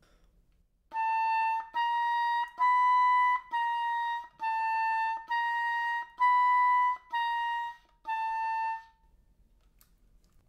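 Oboe playing nine detached, even notes in harmonic fingerings, stepping up and down among neighbouring high notes at a slow, steady pace, about one note every three-quarters of a second. The harmonic fingerings give the tone its rounder, more covered colour.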